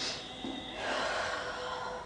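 A woman's breathing: a short sharp breath in at the start, then a longer breath out like a sigh.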